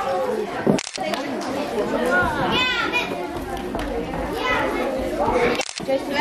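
A group of girls' voices chattering and calling out excitedly all at once, with two short breaks in the sound, about a second in and near the end.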